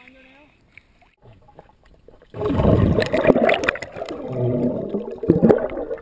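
Close, muffled water splashing and bubbling heard from underwater, starting suddenly and loud about two seconds in after a quieter opening, with sharp clicks and pops through it.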